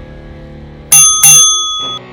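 Two quick, loud strikes of a bell-like timer signal about a second in, ringing on briefly before cutting off abruptly. It marks the start of a timed exercise interval, over steady background music.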